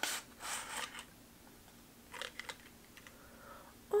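Small cardboard box handled: two short scraping rustles as the card insert is slid out, then a few light clicks a little after two seconds in.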